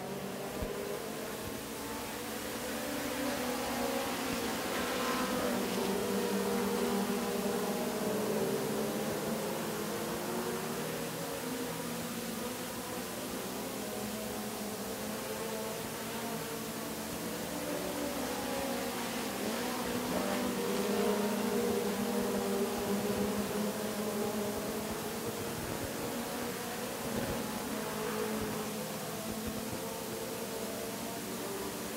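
A pack of four-cylinder dirt-track race cars running under green, their engines blending into a drone of several pitches that rise and fall. The sound swells twice, about 7 and 21 seconds in, as the field comes past.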